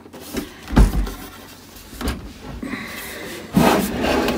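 A heavy metal expansion-box case being turned and shifted on a tabletop: a low thump about a second in, a lighter knock, then a scraping slide near the end.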